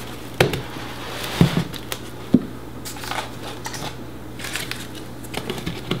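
Plastic lids being pressed and snapped onto plastic deli containers, a few sharp clicks about a second apart and then a quicker run of clicks and crinkles near the end.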